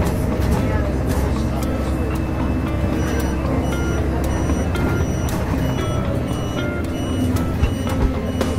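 Steady engine and road rumble heard from inside a bus cab while driving. About three seconds in, a run of short high beeps joins it.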